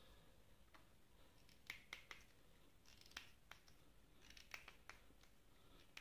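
Faint, irregular clicks and light scratches of a small metal alligator clip and its insulated wire being handled, about eight short, sharp clicks scattered over a quiet background.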